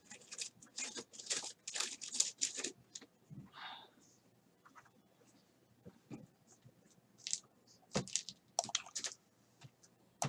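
Plastic packaging of a trading-card hobby box crinkling and tearing in quick, short crackles. They are busiest in the first three seconds and again about seven to nine seconds in, with a quiet stretch between.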